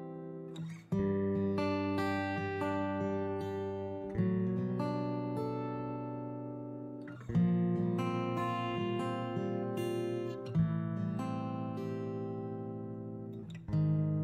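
Background music: an acoustic guitar playing slow chords. A new chord is struck about every three seconds and rings out, fading until the next.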